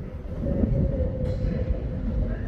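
TransPennine Express passenger train moving slowly through the station: a steady hum over a low rumble, with a short hiss a little past the middle.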